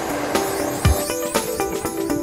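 Background music: held pitched notes with light percussive ticks and a deep drum hit about a second in.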